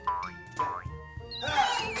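Comic background music made of springy 'boing' plucks about twice a second, then, near the end, a wobbling whistle that slides downward.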